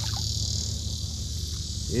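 Insects chirring in a steady, high-pitched chorus over a low, steady hum.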